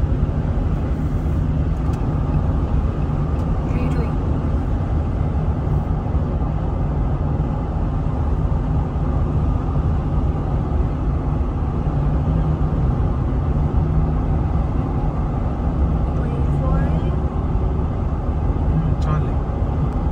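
Steady road and engine noise of a car driving at highway speed, heard from inside the cabin: an even low rumble with no changes.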